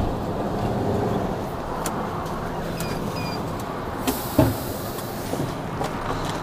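Tipper truck's diesel engine idling steadily, heard from inside the cab. About four seconds in, a hiss of air runs for over a second, with a single knock partway through it.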